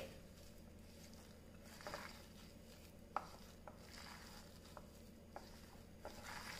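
Faint squishing and rustling of hands mixing coarse-ground chana dal batter with chopped vegetables in a glass bowl, with a few light clicks in the second half.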